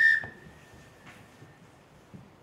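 A single blast on a referee's whistle, a high steady tone that starts sharply and fades away over about a second and a half, signalling the start of the minute's silence.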